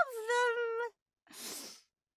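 A woman's voice holding one high, drawn-out vocal note for about a second, gliding down and then held with a slight waver, followed by a breathy inhale.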